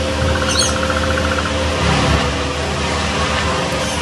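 Steady background hum and hiss, with a short high bird chirp about half a second in and a faint, rapid run of pulses during the first second and a half.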